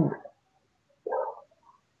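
A man's word trailing off, then a pause holding one short, faint breath about a second in.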